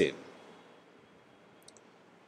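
Quiet room tone with a brief, faint click near the end.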